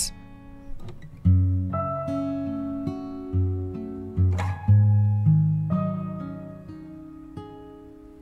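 Acoustic guitar playing slow plucked notes and chords that ring out and fade one after another, growing quieter toward the end.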